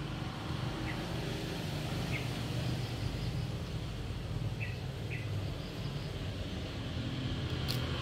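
Steady low outdoor hum with about four short, faint bird chirps spread through it, and a sharp click near the end.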